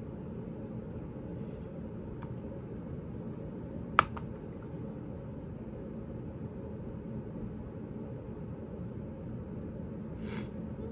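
Steady low room hum, like a fan or air conditioner running, with one sharp click about four seconds in.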